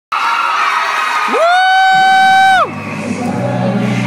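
A crowd cheering and screaming. About a second in, one voice near the microphone rises into a long high whoop, the loudest sound, held for over a second before it drops away. Low music notes come in near the end.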